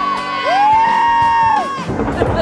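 High-pitched voices holding long notes that slide up, hold for about a second and slide away, one after another.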